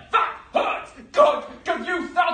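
A man's short, loud, wordless vocal outbursts, about four in quick succession: bark-like yells and grunts of a staged scuffle.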